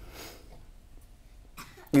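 A man's breathing during a pause in speaking: a soft breathy exhale trails off at the start, and a short, sharp intake of breath comes just before he speaks again.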